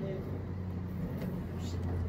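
A steady low hum runs through the pause, engine-like in character, after a man's brief spoken word at the start.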